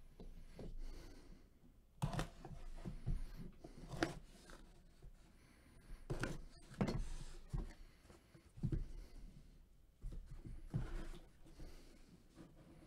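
Box cutter slicing through the tape seal along the seam of a cardboard box, with short scrapes, knocks and rustles of the cardboard being handled every second or two.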